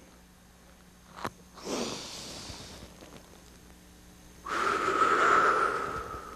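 A man breathing deeply and slowly during a breathing exercise: a softer breath about two seconds in, then a longer, louder breath from about four and a half seconds in with a faint whistle to it. A single small click comes just before the first breath.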